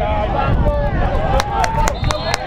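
Shouting voices of footballers and spectators carrying across an outdoor pitch, over a steady low wind rumble on the microphone, with a few sharp knocks near the end.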